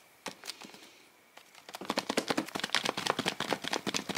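A Sylvanian Families blind bag being shaken, the small plastic figure and accessory pieces inside thudding and rattling against the foil packet: a few light taps, then from about two seconds in a rapid run of thuds. Its thudding is taken as a promising sign of the bag's contents.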